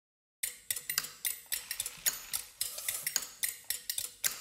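Utensils and dishes clinking: a quick, irregular run of sharp clinks with a bright ringing, starting about half a second in after silence.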